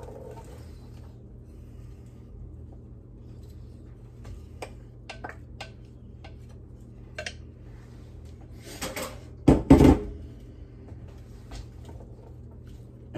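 A wooden spoon scraping diced peppers and onion out of a glass bowl into a skillet and then stirring them, with scattered light clicks, and a few loud knocks about three-quarters of the way through. A steady low hum runs underneath.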